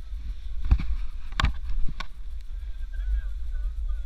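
Snowboard sliding and scraping over groomed snow, with a steady low rumble of wind on the camera microphone. Three sharp knocks come in the first two seconds, the middle one the loudest.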